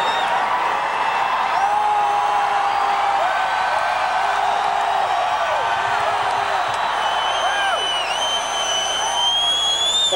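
Large arena crowd cheering without a break, with long whistles and held, rising and falling 'whoo' shouts over the steady crowd noise.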